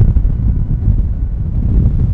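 Wind buffeting the microphone: a loud, gusty low rumble.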